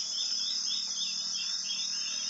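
Insects trilling steadily at a high pitch, with a run of short repeated chirps beneath it, about four a second.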